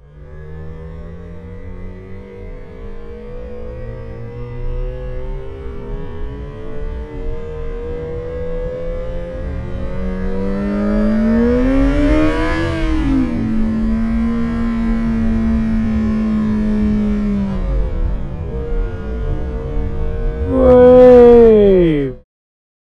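Yamaha XJ6 Diversion F's inline-four engine heard slowed down in a slow-motion replay. The drawn-out engine note climbs steadily, then surges and falls back about halfway through as the rear wheel spins up on spilled diesel and the throttle is eased, then holds steady. Near the end comes the loudest part, a sharp rise and then a quick drop in pitch.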